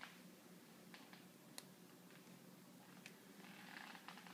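Near silence: faint room tone with a steady low hum and a few soft clicks.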